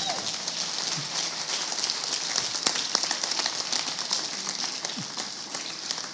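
A congregation applauding: steady clapping from many hands.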